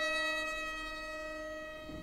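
The song's final chord held on violin and piano, fading slowly, then cut off abruptly near the end.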